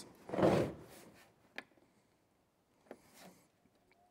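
A BLUETTI Elite 100 V2 portable power station being handled and switched on: a shuffling rub as the unit is turned, then two sharp clicks of its buttons being pressed. Near the end, a faint steady tone begins as the unit boots.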